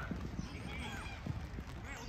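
Children shouting and calling out short rising-and-falling cries during a youth football match, over the patter of players running on artificial turf, with a few low thuds.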